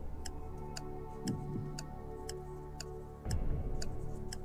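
Countdown-timer clock ticking sound effect, a steady tick about twice a second, over a low sustained music bed.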